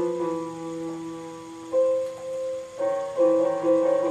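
Small portable electronic keyboard playing held pairs of notes with both hands, a new note or pair struck about three times. The hands are stepping chromatically outward from D, one note at a time, away from each other.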